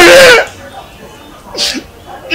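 A man's loud, drawn-out voice, held on steady pitches like a sung or chanted call, breaks off about half a second in. Near the end comes a short, breathy, hissing burst.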